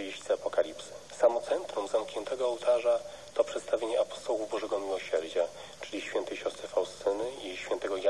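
Continuous speech with a thin, band-limited sound, like a voice heard over the radio.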